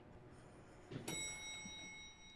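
Faint elevator chime: a single bell-like ding about a second in that rings on steadily.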